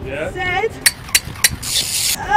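A football being juggled off the foot: three sharp kicks of the ball, about a third of a second apart, in the middle, then a short hiss near the end.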